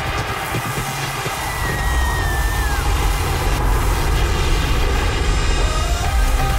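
Live pop concert: a bass-heavy electronic track plays over a dense noise of the crowd, with a high whistle that glides downward briefly about two seconds in.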